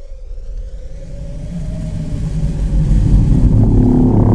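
Deep cinematic rumble growing steadily louder, with a faint wavering high tone above it: a trailer build-up ahead of the monster's reveal.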